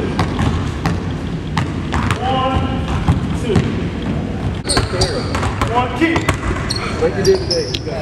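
Basketballs bouncing on a hardwood gym floor in irregular knocks, with voices in the hall around them.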